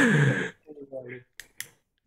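Men's laughter that trails off, falling in pitch and fading after about half a second, followed by two short sharp clicks near the end.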